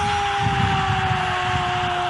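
A single long held tone, falling slowly and steadily in pitch, over a steady hiss, as the shot goes in for a goal.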